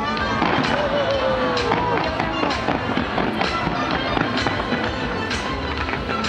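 Aerial fireworks bursting in a rapid, irregular string of loud bangs, one after another, with music playing underneath.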